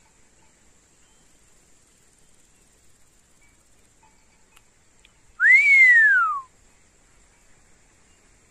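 Common buzzard giving its mewing call once, a little past the middle: a single drawn-out whistled note that rises briefly, then glides down for about a second.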